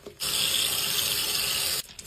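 Water running and splashing into a sink as a sponge is rinsed and squeezed under the tap, starting about a quarter of a second in. It breaks off briefly near the end and starts again.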